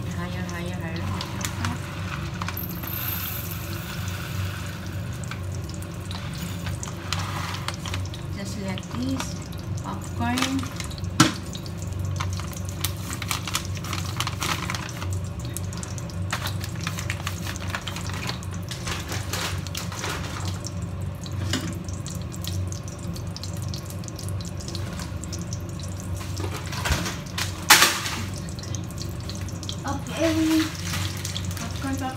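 Butter sizzling as it melts in a metal saucepan over a gas burner: a steady crackling fizz over a low hum, with a sharp knock about eleven seconds in and another near the end.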